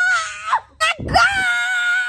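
A woman screaming out in pain, as if in labour: two long, high wails, the first ending about half a second in and the second starting about a second in and held steady for about a second.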